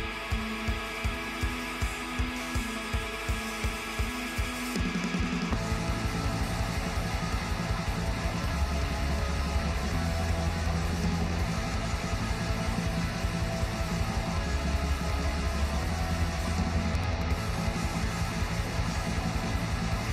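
A black metal song with a post-rock feel, played back. Sustained distorted electric guitar rings over a steady drum beat of about two hits a second. About five seconds in, the full band comes in with a dense wall of guitars and drums.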